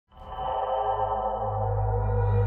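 Opening music of a Bangla film song: a held chord that fades in within the first half second and slowly swells, over a deep steady bass note.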